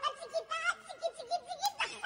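A person laughing in a run of short, high-pitched pulses, with a brief sharp click near the end.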